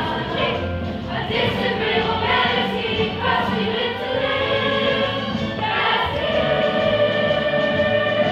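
A stage musical's cast ensemble singing together as a choir, the sung phrases moving through the first six seconds and then settling into a long held chord.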